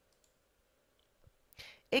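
A few faint computer mouse clicks in an otherwise near-silent pause, then a short intake of breath just before speech resumes.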